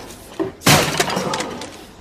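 Film sound effect: a laptop slammed down onto a table, a sudden loud smash about two-thirds of a second in, followed by a rattling clatter that dies away over about a second.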